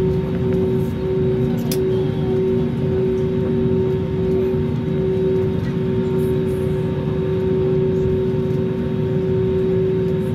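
Inside a jet airliner's cabin while it taxis: a steady hum from the engines and cabin with a constant low tone.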